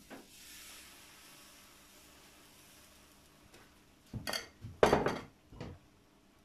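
Crepe batter poured onto the hot plate of an electric crepe maker, sizzling faintly and fading over a few seconds. About four seconds in, kitchen utensils clatter loudly three times as the ladle and wooden crepe spreader are handled.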